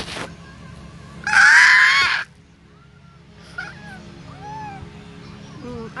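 A baby's loud, high-pitched squeal lasting about a second, followed a little later by a few soft, short coos.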